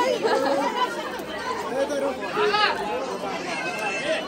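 Several people talking over one another: lively overlapping chatter.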